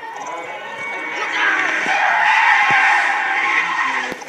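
A voice making a long, drawn-out vehicle sound for a toy truck, swelling louder about a second in and cutting off at the end.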